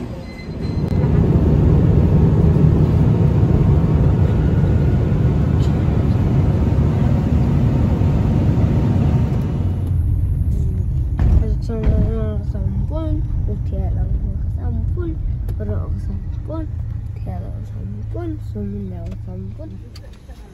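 A loud, steady rushing noise of jet airliner cabin sound in flight. About ten seconds in it gives way to the lower rumble of a car ride, with voices talking over it.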